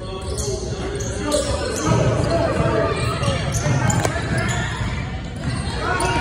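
A basketball bouncing on a hardwood gym floor during live play, with indistinct calls from players and spectators.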